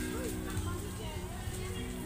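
Fairground background: faint voices and music over a steady low hum.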